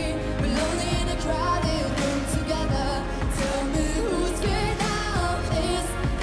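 A young woman singing a pop ballad, holding notes with a wavering vibrato, over a pop backing track.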